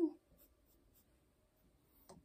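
Near silence: room tone, after the very end of a voice sliding down in pitch in the first moment.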